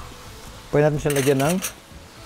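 A man speaking a few words, about a second long in the middle, over a faint background hiss.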